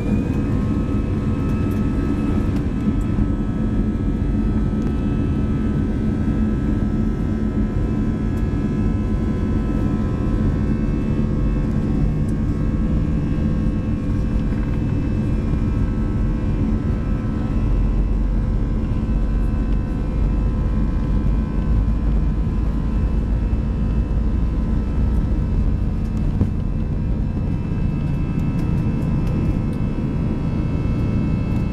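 Airbus A320's jet engines at takeoff thrust, heard from inside the cabin over the wing: a steady whine that finishes rising to full pitch at the very start, over the loud rumble of the takeoff roll. The low rumble grows heavier about halfway through as the aircraft speeds down the runway toward liftoff.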